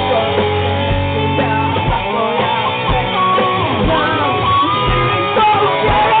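Small rock band playing live: electric guitar notes, some sliding, over bass and a drum kit, with the kick drum landing about once a second.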